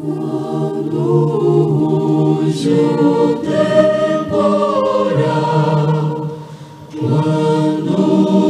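A choir singing a hymn in held chords, with a brief break between phrases about two-thirds of the way through.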